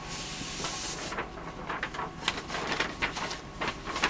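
Sheets of paper being handled: a rustling slide in the first second, then a string of irregular crackles and scrapes as comic art pages are shuffled.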